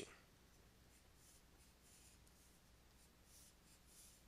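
Near silence, with faint scratching of a stylus writing on a drawing tablet.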